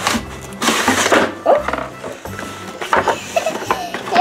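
Cardboard scraping and rustling as a cardboard case is slid out of its outer box, loudest about a second in, over background music.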